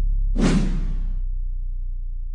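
Broadcast graphics sound effect: a swoosh about half a second in, over the slowly fading tail of a deep bass hit.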